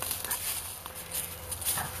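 A dog barking in the distance, a few faint short barks.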